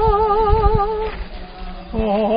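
A woman singing a Korean Buddhist hymn, holding a long note with a steady, even vibrato that ends about a second in. After a short pause the next phrase begins at the very end.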